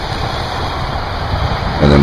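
Steady rushing outdoor noise with a low rumble; a man's voice comes in near the end.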